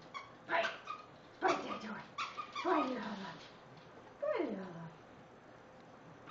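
A small dog whining in a run of short calls, several of them sliding down in pitch.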